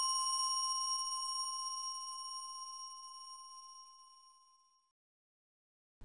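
A single struck bell ringing out, a clear tone with several higher overtones, fading away over about four seconds.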